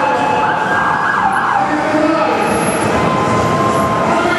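A vehicle siren sounds in a few falling sweeps over the first second and a half, then holds a steady tone near the end.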